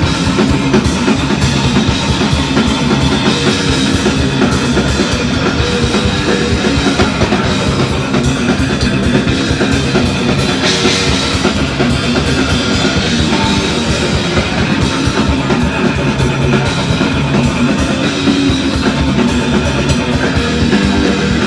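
Three-piece rock band playing an instrumental passage live: electric guitar, bass guitar and drum kit, loud and continuous.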